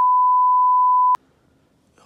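A single steady electronic beep, a pure tone of about 1 kHz lasting just over a second, starting and stopping abruptly with a click at each end. It is a test-tone style sound effect laid over a TV switch-off style video transition.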